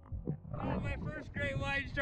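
A man whooping and yelling in excitement, several loud high-pitched shouts that begin about half a second in, over a low rumble of water and wind on the microphone.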